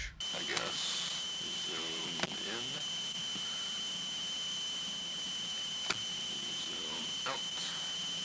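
Audio recorded through a mid-1980s RCA VHS camcorder's built-in microphone: a steady hiss under a constant high-pitched whine, with a faint voice about two seconds in and two sharp clicks. The recording sounds poor, which the owner calls awful and can't explain.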